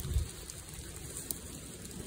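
Rain falling on aspen leaves and brush: a soft, steady hiss with scattered faint drop ticks. A brief low thump at the start.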